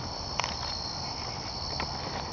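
Steady high-pitched trilling of night insects, with a couple of faint clicks.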